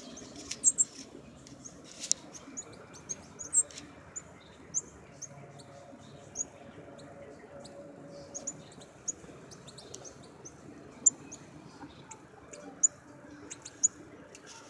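Northern cardinal giving short, high chip notes every second or so, a few of them much louder near the end.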